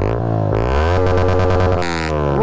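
Yamaha R15M's single-cylinder engine through an aftermarket SC Project exhaust being revved: the pitch rises over about a second and holds high, with a short burst of noise near the end.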